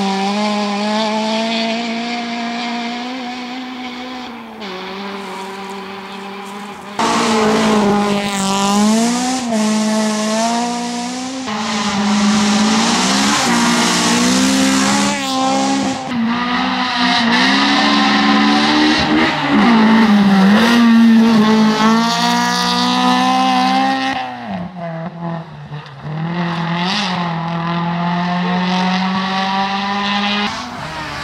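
Honda Civic rally car's engine revving hard near the limit, its pitch climbing through each gear and dropping at each shift as the car is driven flat out. The sound jumps abruptly several times as one pass gives way to the next.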